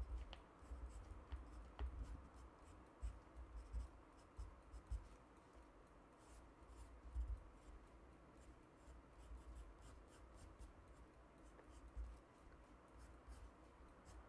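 Faint scratching of a pen on paper while a small cartoon figure is drawn, in short irregular strokes, with a few soft low bumps of the hand and book against the desk.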